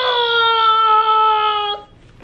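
A child's voice holding one long, high wailing cry, its pitch sinking slightly before it cuts off abruptly near the end.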